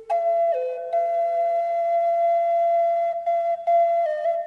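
Background music: a slow melody of long held notes on a flute-like wind instrument. The note steps down in pitch about half a second in, then a long steady note follows, broken briefly twice.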